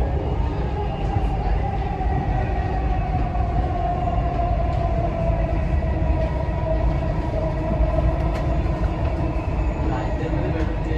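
Dubai Metro train running, heard from inside the car: a steady low rumble with a whine that slowly falls in pitch.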